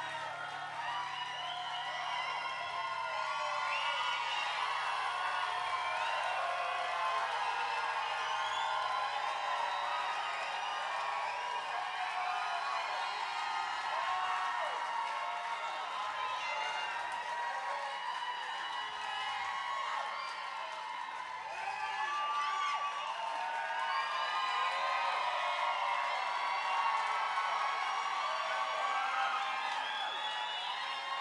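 Live concert crowd cheering, whooping and clapping between sung lines. A low held note from the stage fades out about halfway through.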